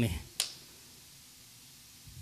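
A single sharp click about half a second in, then quiet room tone.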